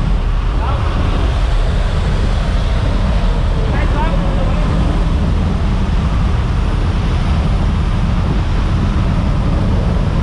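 Loud, steady rush of wind and aircraft engine noise through the open door of a skydiving jump plane in flight, strongest in the low end. A couple of brief, faint voice calls come through it about one and four seconds in.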